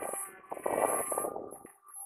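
DJI Spark mini quadcopter's propellers buzzing steadily as it hovers low, lining up to land on its landing pad. The sound fades away near the end.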